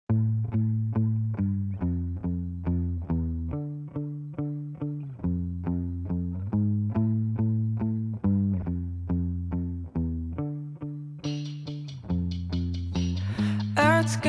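Instrumental intro of a rock song: a low guitar riff picked in a steady run of about four notes a second. A high hissy layer joins about three seconds before the end, and the full band builds in near the end.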